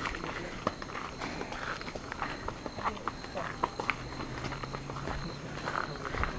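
Footsteps of several people walking on a dirt forest trail: irregular scuffs and soft slaps of sandals and flip-flops, with faint chatter in the background.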